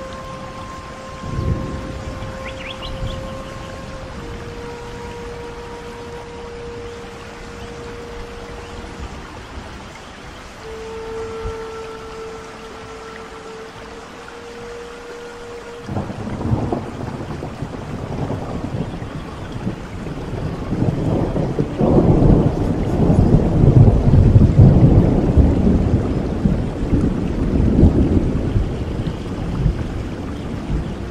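A Native American flute holds a few long, slow notes over steady rain. About halfway through, a long roll of thunder starts suddenly, swells to the loudest sound and eases off near the end.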